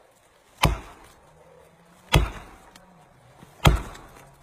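Felling wedges being hammered into the back cut of a large tree trunk: three heavy, sharp blows, about one every second and a half.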